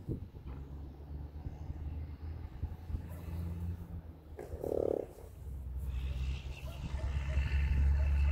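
A horse rolling on the ground in dirt, with one short groan about four and a half seconds in, over a steady low rumble.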